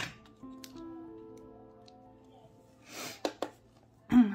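Soft background music with long held notes, then, about three seconds in, one sniff through a nose congested with an oncoming cold. A couple of small sharp clicks follow the sniff, and there is another at the start.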